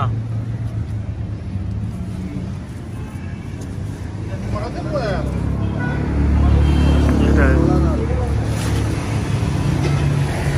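Low, steady drone of a motor vehicle running nearby, growing louder a little past the middle, with voices faintly in the background.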